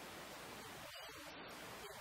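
Steady hiss of background noise with no clear voice.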